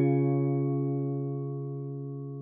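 Music: a single held chord, struck just before and fading slowly and evenly, with no new notes.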